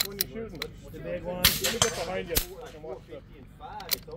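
Shot from a .22 rimfire Bergara rifle: a sharp crack about a second and a half in, among several other short cracks from gunfire around the range.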